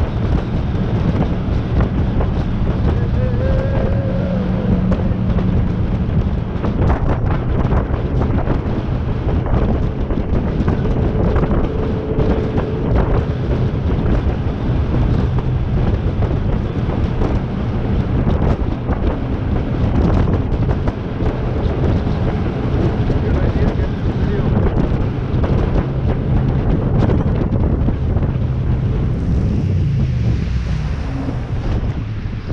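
Jet boat running upriver at speed, its 6.2-litre V8 and jet drive under steady wind buffeting on the microphone and rushing water. Near the end a hiss of spray comes in.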